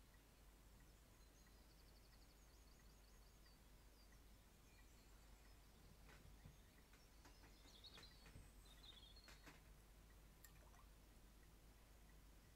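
Near silence: faint room tone with a low hum, a faint rapid run of high chirps about a second in, and a few light clicks later on.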